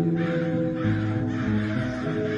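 Crows cawing harshly several times in a row over soft guitar background music.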